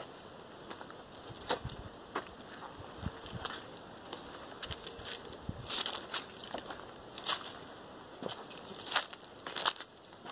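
Footsteps crunching on dry leaves and twigs, as scattered, irregular crackles that come thicker near the end.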